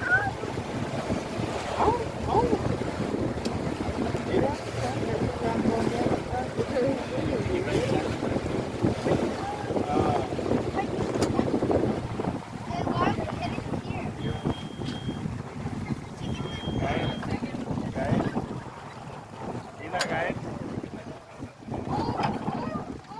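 A boat running on open water, with wind buffeting the microphone and a jumble of voices throughout.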